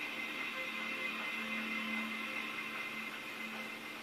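Faint steady hiss and hum of a quiet small room, with soft sustained tones underneath.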